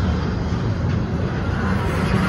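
Double-stack intermodal freight train rolling past close by: a steady, loud low rolling noise of steel wheels on the rails as the container well cars go by.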